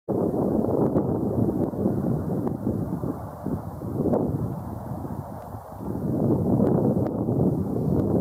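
Wind buffeting the microphone: a loud, uneven low rumble that swells and dips, easing for a moment about five seconds in, with a few faint clicks.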